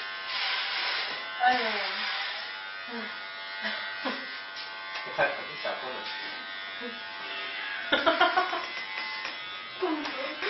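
Electric hair clippers running with a steady buzz, shaving a head down to stubble.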